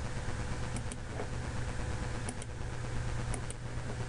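Steady low electrical hum with background hiss, broken by a few faint computer mouse clicks, roughly in pairs, as points are picked and a constraint is applied in the CAD program.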